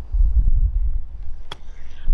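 A golf club strikes the ball once, about one and a half seconds in, with a single sharp click on a short flop shot played off the grass over a bunker. Wind rumbles on the microphone throughout.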